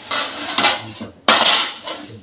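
Metal ladle scraping and clanking inside a large aluminium pot as broth is scooped out, in two loud bursts of about half a second each.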